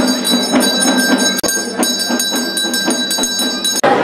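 Temple bell rung rapidly and continuously during puja, about four strikes a second over a sustained ring, cutting off abruptly near the end.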